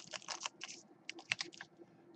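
Trading cards being thumbed through by hand: quick, irregular light clicks and slides as card edges snap past one another.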